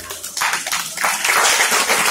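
Audience applauding with many hands clapping, starting about half a second in.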